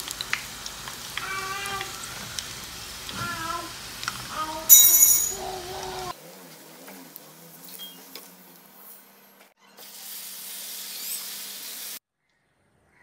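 Hot oil sizzling as snacks deep-fry in a pan, with a few short pitched sounds over it, the loudest about five seconds in. The sizzle turns quieter and thinner from about halfway.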